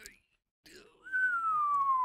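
A person whistling one long, slowly falling note that starts about halfway in.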